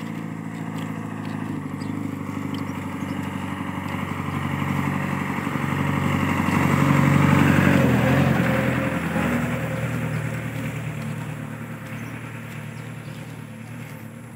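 Large diesel truck engine idling steadily, growing louder to a peak about halfway through and then fading as it is passed at close range.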